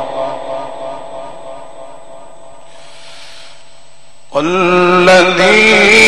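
Male Quran reciter's voice through a PA with a reverberant hall: a held note dies away in the echo, then after a pause of about two seconds the voice comes back loud with a long, ornamented phrase that bends and holds its pitch.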